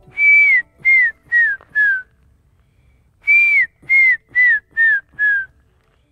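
A man whistling two runs of short, clear notes, four and then five, each note sliding slightly down and each run stepping lower in pitch, with a pause of about a second between the runs.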